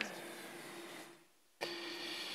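Steady background hum with a faint held tone. It cuts out suddenly for about a third of a second just past the middle, then comes back abruptly.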